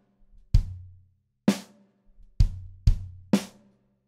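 Drum kit playing a kick and snare pattern with no hi-hats: a bass drum stroke, a snare hit, two quick bass drum strokes, then another snare hit, at a steady beginner tempo.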